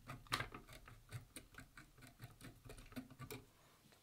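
Dubbing brush scratched over a tuft of blue dubbing on a fly-tying tube to tease out the strands: faint, irregular quick scratches and ticks, the sharpest about a third of a second in.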